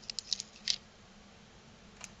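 Thin plastic dust-seal film being peeled off a camera's image sensor with tweezers: a quick run of small crackles in the first second, the last the loudest.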